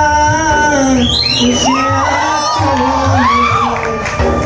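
Backing music with a steady beat runs throughout while a man's held sung note fades out about a second in. Over the music, short whoops and whistles from the audience rise and fall several times until near the end.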